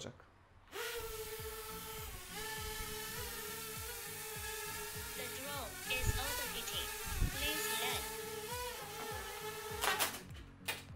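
Xiaomi MITU mini quadcopter's propellers spinning up about a second in, then a steady high-pitched buzz as it flies. The pitch dips and rises several times in the second half as it manoeuvres.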